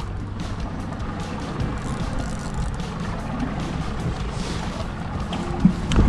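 Boat's outboard motor running steadily with a low, even hum, with background music underneath.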